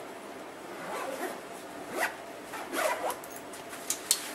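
Water-resistant YKK zipper on a backpack's back-entry camera compartment being zipped shut in several short pulls.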